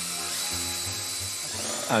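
An 18 V cordless drill runs steadily as its bit bores into an ostrich eggshell, a whir with a hissing grind of bit on shell. The shell is almost unbreakable, so it is drilled to open it. It stops near the end as a voice begins.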